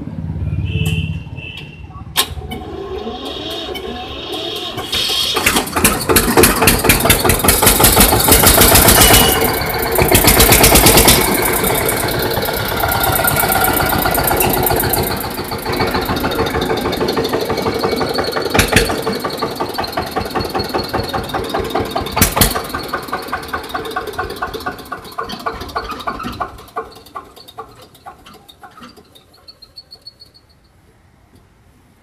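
Eicher 242 tractor's single-cylinder, air-cooled diesel engine cranked on the starter and catching after a few seconds. It is revved loud, then runs at a steady idle, and it dies away near the end.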